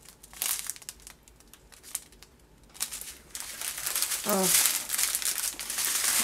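Clear plastic packets of diamond painting drills crinkling as they are handled: a string of soft crackles, sparse at first and thicker and louder from about three seconds in.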